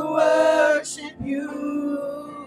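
Worship singers singing a gospel praise song into microphones, holding long notes in two phrases with a short break about a second in.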